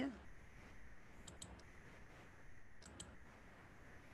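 Faint clicks of a computer mouse: a small cluster a little over a second in and two more near three seconds in, over low room hiss.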